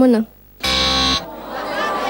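Game-show wrong-answer buzzer: one harsh, steady tone lasting about half a second, signalling an incorrect answer.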